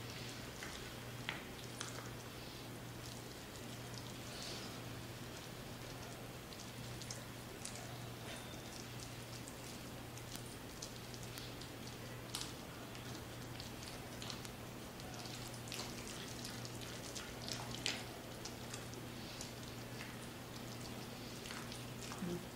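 A spatula mixing a thick, wet mashed-potato mixture in a pot: faint soft squelches and scattered light ticks against the pot, over a steady low hum.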